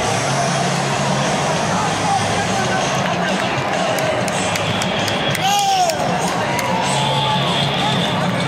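Large stadium crowd of fans making a steady roar of voices, with nearby fans shouting and chattering. One loud shout rises and falls about five and a half seconds in.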